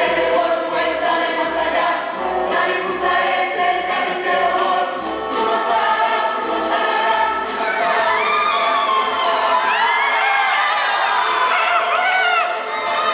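Stage-musical ensemble number: a choir singing over accompaniment with a steady low beat about twice a second. The beat drops out about two-thirds of the way through, and high, gliding cries rise over the singing to the end.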